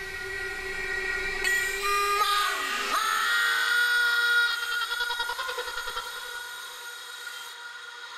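Beatless breakdown in a hardstyle dance-music mix: sustained high synth chords with no kick drum, a falling pitch sweep about two to three seconds in, and the sound thinning out toward the end.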